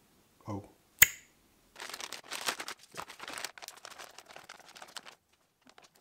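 A single sharp click about a second in, then a few seconds of irregular crinkling from a plastic vacuum storage bag being handled.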